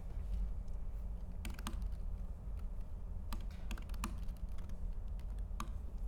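Scattered keystrokes on a laptop keyboard: a handful of separate taps at irregular intervals over a low steady hum.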